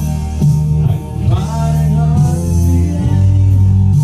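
Man singing karaoke into a microphone over a loud recorded backing track.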